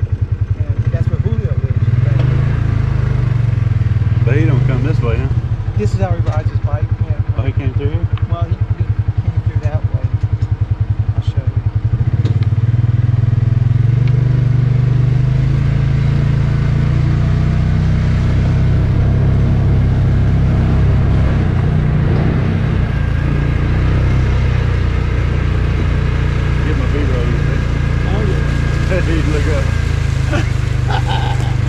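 Side-by-side utility vehicle's engine running as it drives along a dirt track, a steady low engine sound, with voices talking over it.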